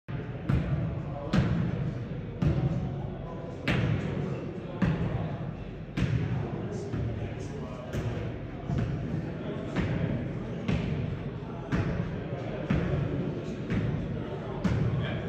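A football being volleyed back and forth between players, each touch a sharp thump about once a second, over a background murmur of voices in a large hall.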